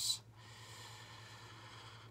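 A faint, steady breath through the nose in a pause between sentences, over a low electrical hum.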